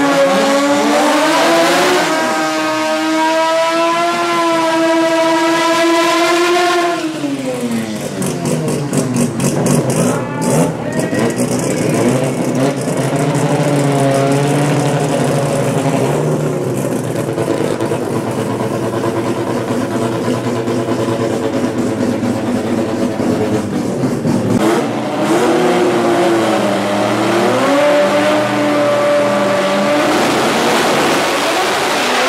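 Rotary-engined drag cars running hard: an engine held at high revs through a burnout for about seven seconds, then dropping away. Engines then idle and blip at lower revs, and one revs up high again in the last few seconds.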